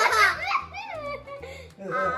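Young girls laughing and giggling, with slurred, half-formed child speech from a girl wearing a cheek-retractor mouthpiece that holds her lips apart. The laughter is loudest at the start and fades into the mumbled talk.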